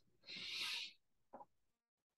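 A soft, breathy hiss lasting about half a second, like an exhale or a hushing 'shh' into a headset microphone, followed about half a second later by a brief murmur.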